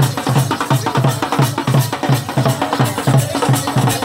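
Hand-held festival drums, a frame drum and a side drum beaten with sticks, playing a fast, even beat of about five strokes a second.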